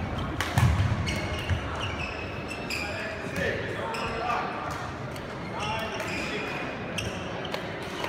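Badminton play in a reverberant sports hall: sharp racket strikes on the shuttlecock and low footfall thuds in the first second, then scattered sharp hits through the rest, with voices in the hall.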